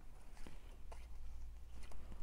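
Paper cut-outs being sorted by hand: faint rustling of paper, with a few soft ticks as pieces are picked up and dropped.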